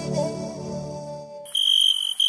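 Soft background music fades out, and about one and a half seconds in a high, steady electronic beep tone starts abruptly and holds.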